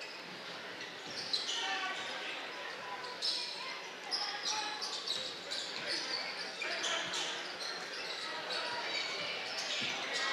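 Basketball game sounds in a gym: the ball being dribbled on the hardwood court, with short high-pitched sneaker squeaks from the players and a steady murmur from the crowd in a large, echoing hall.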